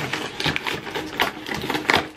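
Cardboard shipping box being torn open by hand: a rapid, uneven run of ripping and scraping, with a sharper tear near the end.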